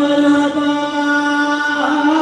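A man singing live, holding one long steady note that moves into a changing phrase near the end.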